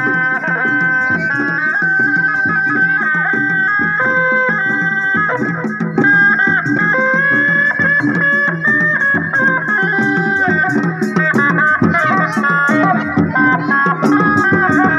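Reak ensemble music: a high, wavering reed-pipe melody, held in long notes, over a steady beat of drums.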